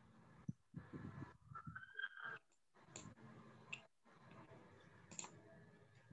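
Near silence with a few faint, scattered computer mouse clicks from drawing on a shared screen, over low room noise.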